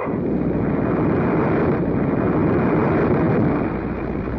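Sea waves surging and breaking over rocks: a dense, steady rushing roar that swells after the start and eases a little near the end.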